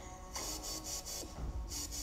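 Soft brushing strokes of a makeup brush sweeping powder highlighter over the skin, a light hissy rub repeated four or five times, with faint music underneath.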